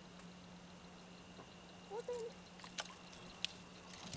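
Mostly quiet, with a steady faint low hum. A brief faint voice-like sound comes about halfway through, and a few light clicks and taps of gear being handled in the canoe follow near the end.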